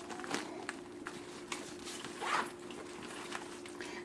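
Faint handling of a zippered fabric fanny pack: a few soft rustles and light clicks as the bag's opening and inner pocket are spread by hand, over a steady low hum.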